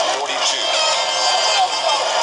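Indistinct voices and music over a steady wash of background noise, typical of game-film sound with the crowd in it.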